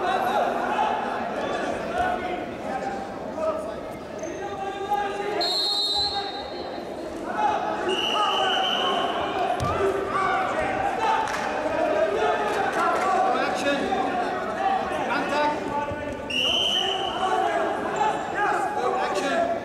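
Voices calling and talking, echoing in a large sports hall, with occasional thuds. Three short, steady, high whistle-like tones sound: one about six seconds in, one about eight seconds in, and one near the end.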